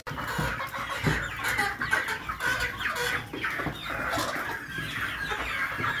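A flock of brown laying hens clucking and calling, many short calls overlapping one another at an even level.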